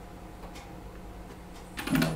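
Computer keyboard keys clicking in a short run near the end, over a faint steady low hum.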